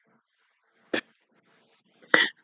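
A woman's single short, stifled laugh about a second in, otherwise near silence.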